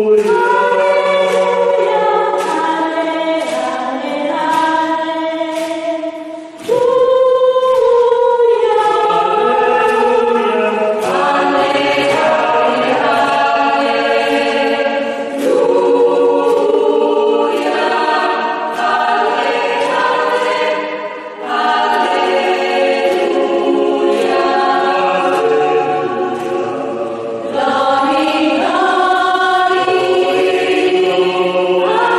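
Polyphonic choir of mixed voices singing a cappella in several parts in a church's echo, with short breaks between phrases about a third of the way in and again past the middle. Light clicks keep a regular beat through the singing, made by the singers' hands.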